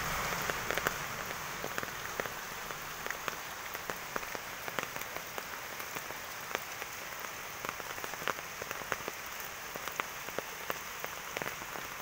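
Steady typhoon rain falling on foliage and bare ground, with many individual drops ticking sharply at irregular moments close by.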